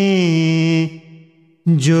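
A man singing a ginan: a long held note at the end of a line, dipping slightly in pitch, stops about a second in, and after a brief pause the singing starts again near the end.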